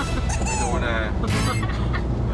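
A high, rapidly wavering cry, broken by short noisy bursts, over the steady low rumble of a passenger van's cabin on the move.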